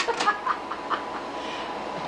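Short bursts of laughter in the first second, then a quieter stretch over a faint steady hum.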